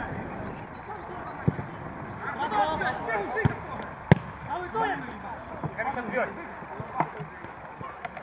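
A football kicked on a grass pitch several times, with sharp thuds; the loudest kick comes about four seconds in. Players shout in between.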